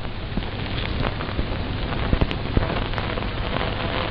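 Steady crackling hiss with scattered clicks: background noise of an old, band-limited recording.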